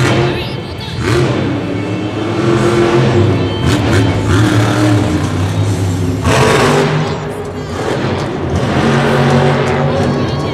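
Bro Camino monster truck's supercharged V8 engine revving loudly, its pitch rising and falling as the throttle is worked, with a louder surge a little past the middle. Arena music and a PA voice run underneath.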